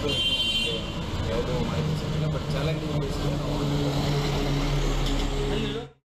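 A motor vehicle engine running steadily close by, with indistinct voices around it. The sound cuts off abruptly just before the end.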